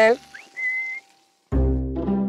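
A person's short whistle calling a horse: a quick upward slide, then one held note. After a brief silence, background music with deep plucked bass and string notes starts about one and a half seconds in.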